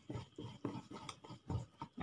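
Hand whisk stirring thick semolina cake batter in a glass bowl: soft, faint wet strokes a few times a second, irregular.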